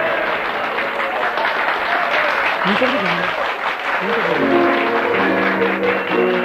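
Audience applauding over instrumental music in a live performance recording, with no singing.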